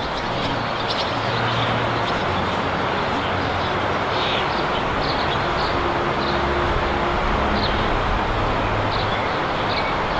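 Steady outdoor background noise with a low, engine-like hum underneath and a few short, high bird-like chirps scattered through it.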